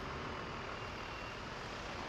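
Steady engine and road noise of a city bus driving slowly past.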